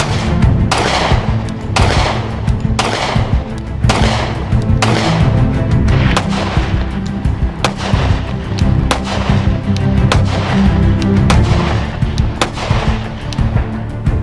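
Glock Model 30 .45 ACP pistol fired in a string of single shots about a second apart, coming a little quicker near the end, each with a short echo, over background music.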